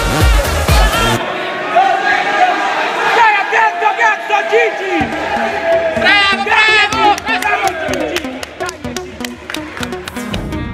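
Electronic dance music. A heavy beat drops out about a second in, leaving a melody over a thin backing, and a bass line comes back in about halfway through.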